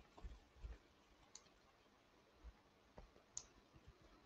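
Near silence: faint room tone with a few soft, scattered clicks and low thumps.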